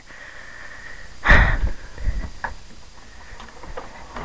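A door being swung shut: a loud scraping swish about a second in, followed by smaller knocks and a click.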